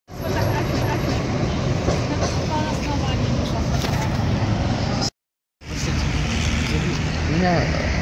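Steady street traffic noise with voices mixed in, broken by a brief dead-silent cut about five seconds in.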